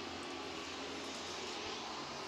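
Steady, distant drone of a pack of racing super trucks' engines, with faint engine tones drifting in pitch.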